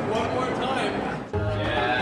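People laughing and talking over background music, with a brief break in the sound about a second and a half in.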